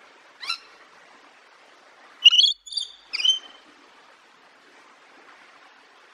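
Rainbow lorikeet calling: one short high-pitched call about half a second in, then a louder burst of three calls in quick succession a couple of seconds later.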